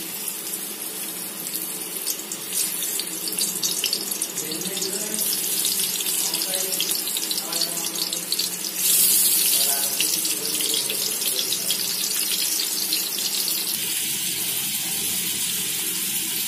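Pumpkin slices frying in hot oil in a flat pan, sizzling and crackling steadily. The sizzle grows louder in steps as more slices go into the oil, loudest about nine seconds in.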